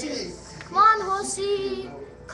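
A child's high voice making drawn-out, sing-song sounds without words, one held phrase starting a little under a second in.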